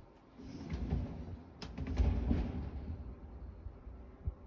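Wind gusting on the microphone: a low rumble that swells, is strongest about two seconds in, then dies down, with a couple of sharp clicks in the middle.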